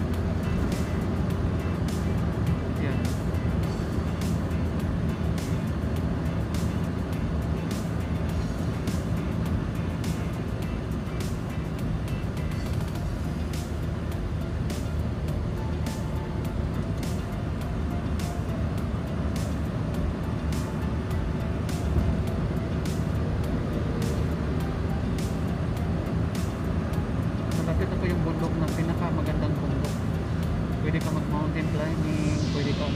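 Steady engine and tyre rumble heard from inside a car on a highway, with music playing over it and a steady beat of about one to two strokes a second.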